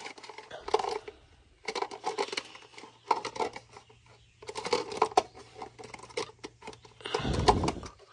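Three short runs of rapid metallic clicking from a hand wrench worked over a small-block Ford V8, as the engine is turned by hand to line up the distributor, with a faint steady low hum underneath.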